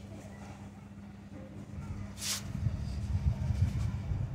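Wind buffeting the microphone in gusts that build from about two seconds in, with a short rustle just before the gusts pick up.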